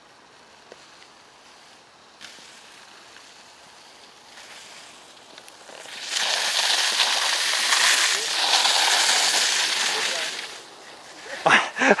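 Mountainboard wheels rolling fast through slush and standing water, a loud spraying hiss that starts about halfway in, lasts about four seconds, then dies away.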